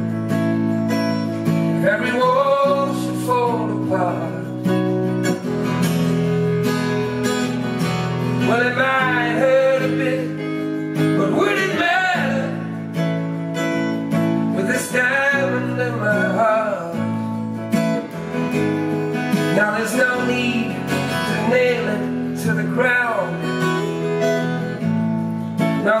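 Live acoustic guitar strummed steadily, the chords changing every couple of seconds, with a man's voice singing a melody over it at several points.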